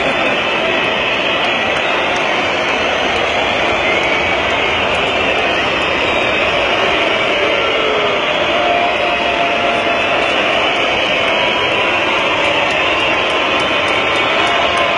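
Large indoor arena crowd making a loud, steady, continuous noise of many voices blending together.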